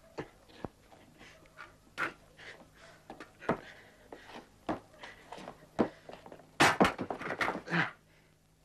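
Irregular knocks and scuffs of movement over cobblestones, with a quick run of louder sharp knocks about six and a half seconds in.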